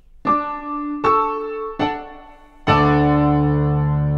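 A short closing piano phrase: three single notes, then a fuller final chord that rings on and fades away.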